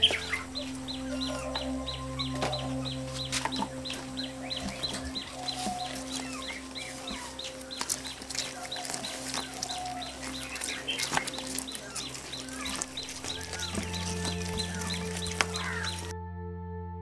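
Chickens clucking over soft, sustained ambient background music, with a rapid high ticking of about four ticks a second through the first half.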